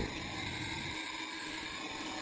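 A steady, even hiss of background noise with a faint hum underneath.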